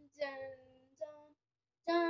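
A young girl singing short held notes on a 'dum'-like syllable: three brief notes separated by short gaps.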